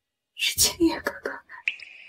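A woman's whispered voice, breathy and hissy, for about a second. A thin, steady high-pitched ringing tone then begins near the end and carries on.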